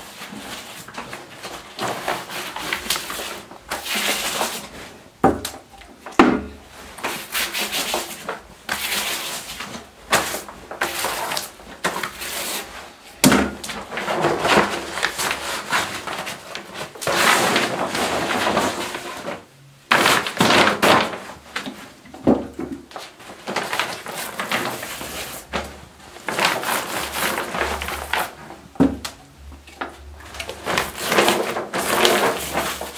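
Paint roller rolling glue over the back of a stiff sheet of wallpaper, in irregular swishing strokes, with the heavy paper rustling and crinkling as it is handled and folded, and a few light knocks.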